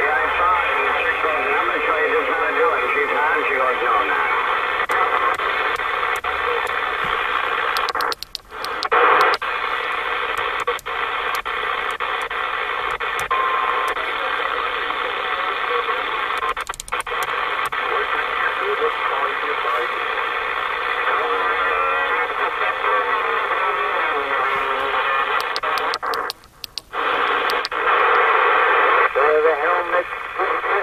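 A Lincoln II+ CB transceiver on receive, playing distant stations on the 27 MHz band through its speaker: overlapping voices in the static of a pile-up, heard on sideband while propagation is open. The sound cuts out briefly about eight seconds in and again near the end as the channel is switched.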